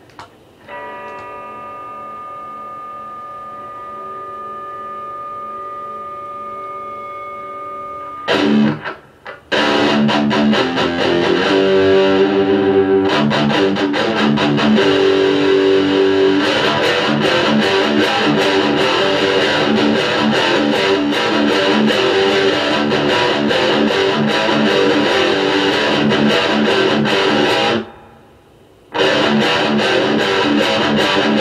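Electric guitar through distortion: a chord rings out for several seconds, then dense fast riffing follows. The riffing stops briefly near the end and then starts again.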